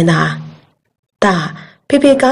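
Speech only: a voice narrating a story, broken by a silent pause of about half a second in the middle.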